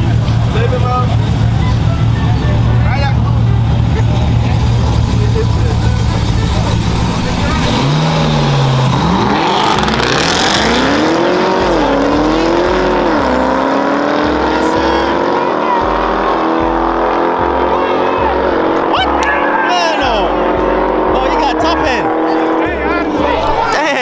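Two V8 performance vehicles, a Chevrolet Camaro ZL1 and a Jeep SRT, race away from a standing start. A steady low engine hum gives way about eight seconds in to engine notes rising in pitch, dropping back at several gear changes. The notes then level off and fade as the cars pull away.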